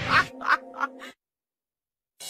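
About five short, quick comic sound-effect calls over a held low music note during the first second, then the audio cuts off to dead silence.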